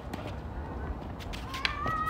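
Tennis rally on a hard court: a racket hits the ball sharply near the end, with a short wavering squeal at the same moment.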